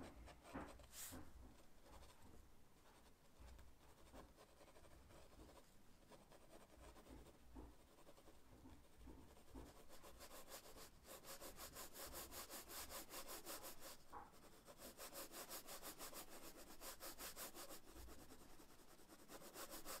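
Faint scratching of mechanical pencil lead on sketchbook paper while shading: sparse strokes at first, then rapid, even back-and-forth shading strokes through the second half.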